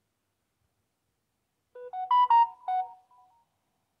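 A short melodic chime from a Samsung Galaxy Note 10 phone's speaker: about five quick notes, starting a little under two seconds in and dying away within about a second and a half.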